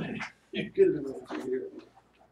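A person's voice making wordless, drawn-out low sounds in two or three short pieces, like a hooting laugh or an 'ooh' of reaction.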